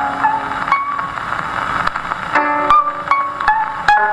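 Koto trio playing plucked, ringing notes on a 1928 Victor 78 rpm shellac record, played on an acoustic Victrola phonograph, with steady surface hiss. The notes thin out for a moment in the middle, leaving mostly hiss, then come back thickly.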